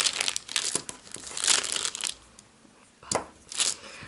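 Baking paper crinkling and rustling in irregular bursts as cured pink silicone putty molds are peeled off it, with a quieter pause of about a second followed by two short crinkles near the end.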